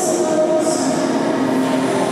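Free-skate program music with long held notes, played over the rink's speakers, with figure skate blades scraping the ice in short hissy strokes, one at the start and another just after half a second in.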